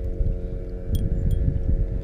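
Wind rumbling on the microphone over a steady low hum. About a second in, a small brass bite-alarm bell on a bottom fishing line gives two quick high tinkles as it is fitted to the line.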